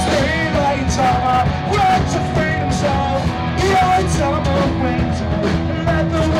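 Rock band playing live, a male singer singing over electric guitar, bass guitar and a drum kit.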